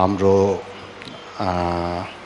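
A man speaking slowly in Nepali in two long, drawn-out stretches. The second is held on a nearly steady pitch.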